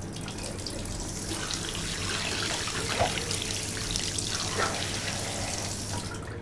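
Water from a tap running into a bathroom washbasin, with irregular splashing.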